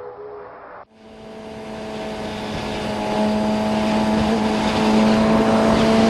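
Yamaha FZ6R motorcycle's inline-four engine running steadily at highway cruise, with heavy wind and road noise. It fades up from almost nothing about a second in, after brief faint music.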